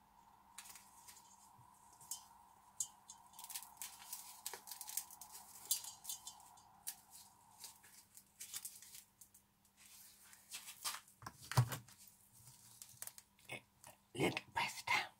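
Faint crunching, scraping and clicking of gloved hands packing crumbly bath bomb mixture from a stainless steel bowl into a plastic mould, with a louder thump late on. A faint steady hum runs under it and stops about eight seconds in.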